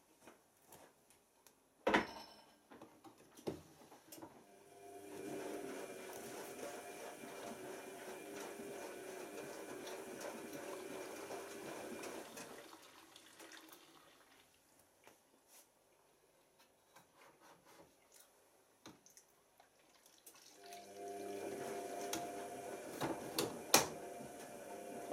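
Tricity Bendix AW1053 front-loading washing machine in its pre-wash, running with water in the drum in two steady spells of about eight seconds, with a pause between them. There is a sharp click about two seconds in.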